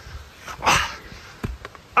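A person's short, breathy, strained "ah" while being hauled up a steep slope by a wooden stick, followed by a single sharp click.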